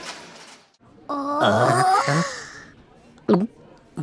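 Animated score fading out, then wordless cartoon-character vocalizing with sliding pitch for about a second and a half, and a short vocal sound near the end.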